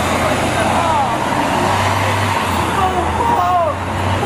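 Street noise with a vehicle engine running as a steady low hum, and people's voices calling out in the background.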